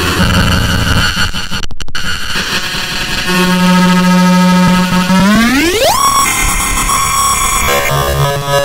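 Circuit-bent Korg Kaoss Pad effects unit producing harsh glitchy noise that cuts out briefly, then a held buzzing tone that sweeps sharply upward in pitch about three quarters of the way through and breaks into high stuttering tones.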